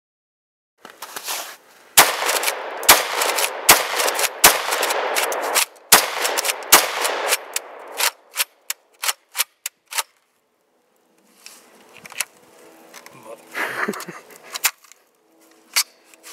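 UTS-15 12-gauge pump-action bullpup shotgun fired in a quick string, about a shot every second, with its magazine tubes packed with mud and grime. After the shots comes a run of lighter sharp clicks, and the gun is jammed by the end.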